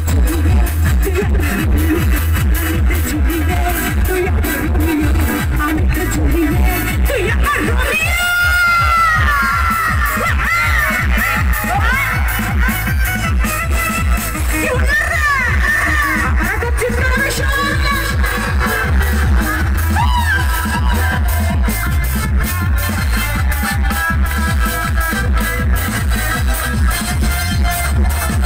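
Live stage band music with a fast electronic dance beat and heavy bass, keyboard-driven, with sliding melody notes about a third of the way in and again past the middle.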